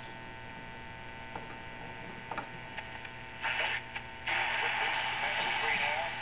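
Tabletop tube radio (model 42-322) on its shortwave band: a steady low hum, with bursts of hissing static a little past three seconds in and again from about four seconds on as the band is tuned.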